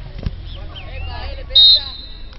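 Referee's whistle: one short, shrill blast about a second and a half in, stopping play after a sliding challenge, over faint distant shouting.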